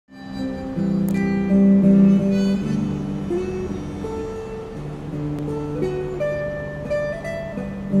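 Westrose Model-T electric guitar, a purple heart and walnut body with Seymour Duncan vintage Broadcaster pickups, played through a small amplifier. It plays a melodic line of held notes that step up and down in pitch.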